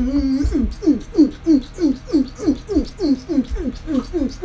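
A woman's voice making a rapid string of short, falling hoots, about three or four a second.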